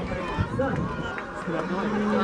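Overlapping voices of a crowd talking and calling out in the open air, with a held, drawn-out voice beginning near the end.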